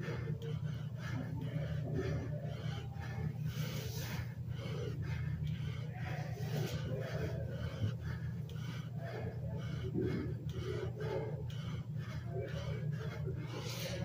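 A man's breathing as he does a set of bodyweight squats, over a steady low hum.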